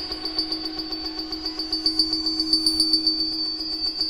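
1978 Serge Paperface modular synthesizer playing an electronic patch with reverb: a steady low drone under high ringing tones, pulsing in a rapid even rhythm, with a faint high sweep rising and falling midway.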